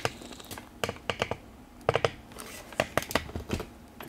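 Handling noise: a run of light, irregular clicks and taps, about fifteen over four seconds.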